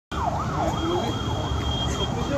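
Steady rumble of road traffic with a tone that glides rapidly down and up again and again, strongest in the first second.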